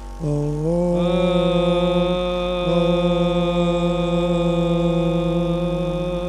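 A long Om chanted aloud by the gathered devotees. It starts a moment in, slides up in pitch over the first second and is then held steady on one note.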